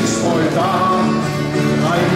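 A man singing a folk-style song in German to his own acoustic guitar accompaniment, the guitar chords ringing steadily under the voice.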